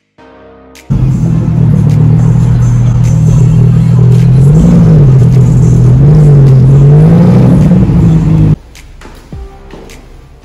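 A loud, close car engine droning, its pitch rising and falling twice as it revs. It starts and stops suddenly.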